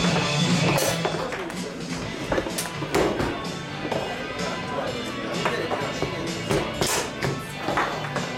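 Foosball being played: irregular sharp clacks of the ball struck by the rod men and knocking about the table, the loudest about seven seconds in, over background music and voices.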